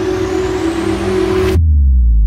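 Horror-trailer sound design: a steady droning tone under a rising hiss swell, which cuts off suddenly about one and a half seconds in and gives way to a deep low boom that rings on, sinking in pitch.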